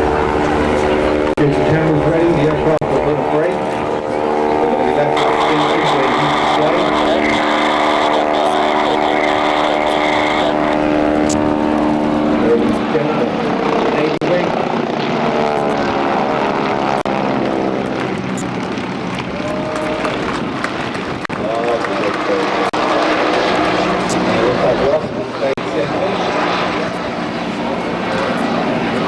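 Engines of propeller planes and a Westland Wasp turbine helicopter flying past overhead in formation: a steady drone made of many pitched tones. The tones step in pitch twice in the first half and bend as the aircraft pass about halfway through.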